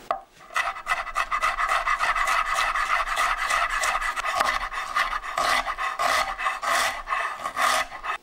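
Kitchen knife finely slicing white cabbage on a wooden cutting board: a fast, steady run of cutting strokes, starting about half a second in.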